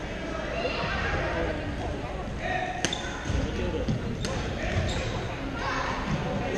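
Badminton rackets hitting a shuttlecock: three sharp cracks in the second half, the first the loudest, over a murmur of indistinct voices echoing in a large gym hall.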